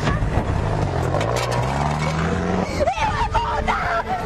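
Car engine accelerating, its pitch climbing steadily for about two seconds before it falls away, as the car drives off.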